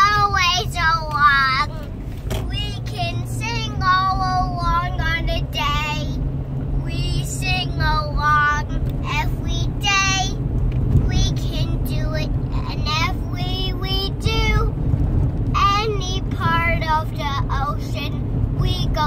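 A young child singing made-up song phrases with short pauses, inside a moving car's cabin with a steady low road and engine hum beneath.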